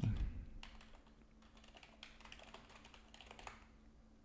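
Typing on a computer keyboard: a quick run of faint key clicks that stops shortly before the end.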